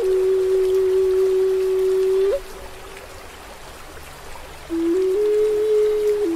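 Native American flute playing a slow melody: a long held note that ends in a quick upward flick about two seconds in. The flute then pauses for about two seconds, leaving only a steady wash of water, and comes back on a low note before stepping up to a higher one near the end. Soft water sounds run underneath throughout.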